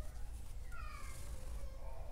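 A short high-pitched animal call that falls in pitch, about a second in, over a low steady hum.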